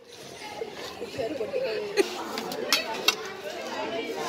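Children chattering in the background, with three sharp metallic clinks from stainless-steel lunch boxes being handled and opened: one about halfway through and two close together near the end.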